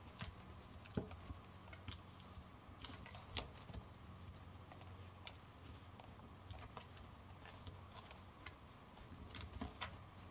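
Faint, irregular clicks and crackles of NZ flax (Phormium tenax) strips being bent, slid and tucked by hand during weaving, with a short cluster of louder clicks near the end.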